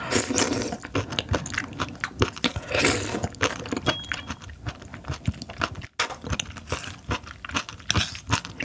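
Close-miked wet slurping and smacking as slimy raw sea cucumber intestines are sucked off a spoon and chewed, with dense wet mouth clicks throughout. Two longer slurps come at the start and about three seconds in. The sound drops out for an instant near six seconds in.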